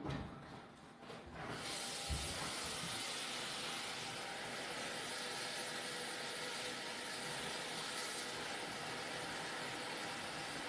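Spaghetti meat sauce cooking in a steel stockpot: a steady sizzling hiss that comes in about a second and a half in and holds, with one soft knock just after it starts.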